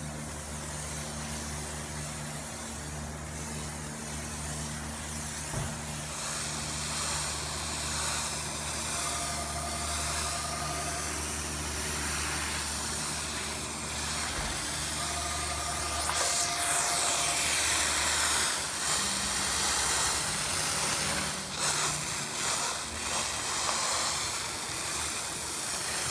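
Hand-pumped IK Foam 9 foam sprayer hissing steadily as it lays pre-wash foam onto a car's body, with a low steady hum underneath. The spray gets louder about two-thirds of the way in.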